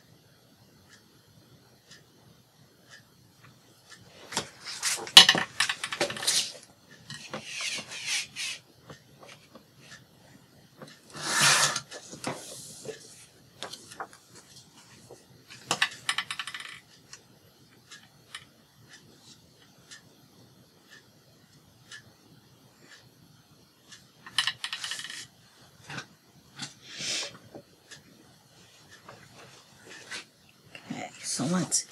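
Paper being handled and rubbed on a craft mat, with a marker pen tapped and set down: several short bursts of rustling and light clicks, the loudest about five and eleven seconds in.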